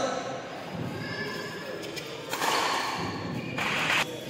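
Badminton doubles rally: a couple of sharp racket strikes on the shuttle, then, from about halfway, over a second of loud noisy shouting voices.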